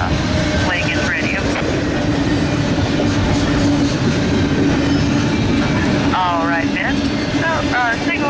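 Double-stack container well cars of a freight train rolling past, a steady rumble of wheels on the rails with a low, even hum.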